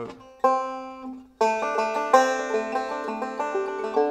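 Resonator five-string banjo picked bluegrass-style: one note rings out for about a second, then a quick run of rolled notes, the D7 lick with its added seventh (a C note) over the D chord.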